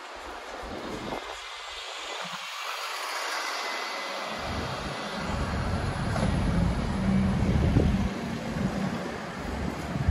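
Red London double-decker bus engine rumbling as the bus passes close by. A low rumble builds from about halfway, is loudest a little after that, and eases near the end, over the steady hiss of city traffic.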